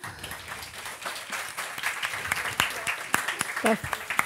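Audience applauding, a dense steady patter of many hands clapping, with a few words of talk coming through near the end.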